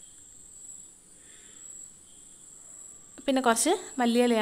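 A steady, thin high-pitched whine over quiet kitchen background, with a voice starting near the end.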